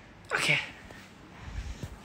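A short, breathy spoken "okay", then low rumbling knocks near the end from a phone being handled close to its microphone.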